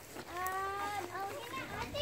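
Young children's voices outdoors: one long high-pitched call about half a second in, followed by shorter calls.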